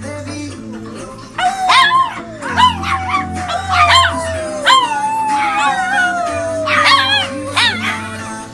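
Small dog howling: one long howl that slides slowly down in pitch, broken by several sharp higher yelps, starting about a second and a half in. Music plays underneath.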